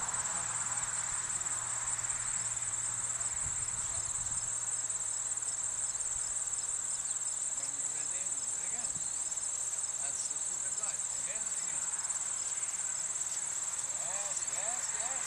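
A steady, high-pitched chorus of crickets trilling without a break.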